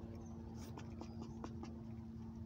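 Fox squirrel gnawing and chewing at an avocado half held in its paws: a run of small clicks and scratchy nibbling noises, over a steady low hum.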